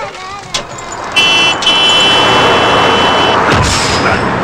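A vehicle horn sounds, a short blast and then a long one, over the rising rush of an approaching vehicle. A low thump comes just before the end.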